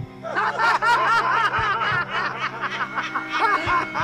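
Laughter, a run of short rapid ha's starting about a third of a second in, over background music with a steady low drone.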